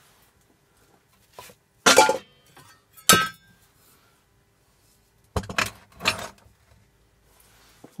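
A glass beer bottle clinks once on the workbench, a sharp knock with a short ring, about three seconds in. A few duller knocks of handling follow near the end.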